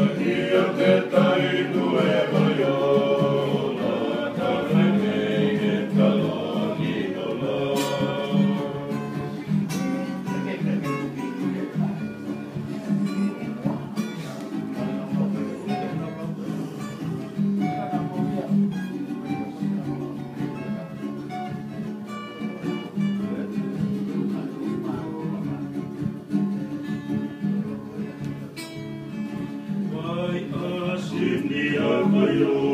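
Group of men singing in harmony to strummed acoustic guitars. After about eight seconds the singing thins out and the guitars carry on more on their own, with fuller voices coming back near the end.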